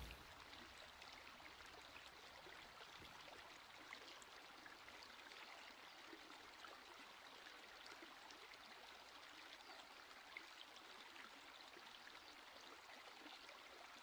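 Near silence, with only a faint, steady hiss in the background.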